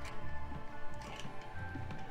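Background music with held tones over a steady low bass pulse. Faint clicks come from plastic toy-figure parts being folded and snapped into place.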